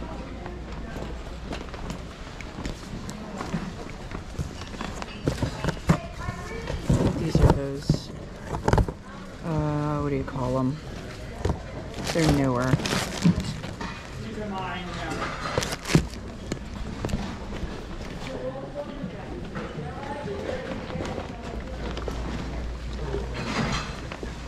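Indistinct chatter of other shoppers in a large hall, with occasional knocks and rustles as items are handled.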